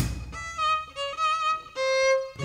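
Solo violin playing a short unaccompanied phrase of about four notes, stepping down to a held last note, in a stop-time break of a swing-blues song where the rest of the band has dropped out.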